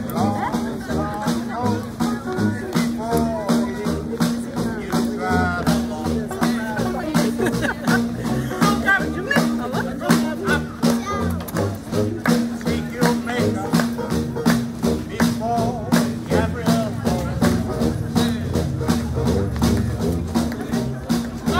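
Live street band playing: a drum and rattling percussion keep a quick steady beat, under a wavering melody line and a steady low held note.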